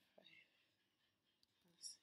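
Near silence with a woman's faint whispered speech, softly muttering the digits of a phone number as she enters it. A short hiss comes near the end.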